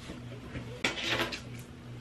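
A short clatter of small hard objects knocking on a hard surface, about a second in, over a low steady hum.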